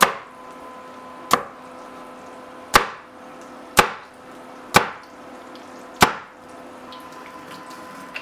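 Meat cleaver chopping through a crisp deep-fried battered chicken breast onto a wooden cutting board: six sharp chops, each a single quick stroke, about a second apart.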